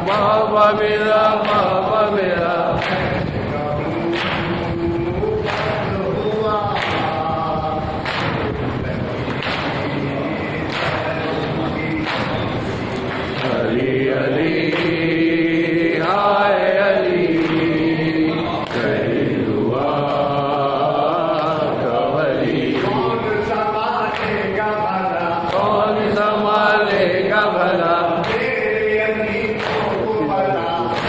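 A crowd of men chanting a mourning chant (nauha) together, with chest-beating (matam) slaps about once a second.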